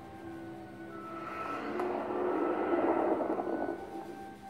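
Film soundtrack from a laptop's speakers: held low tones, then a rushing swell of noise that builds from about a second in, peaks near three seconds and drops away just before the end.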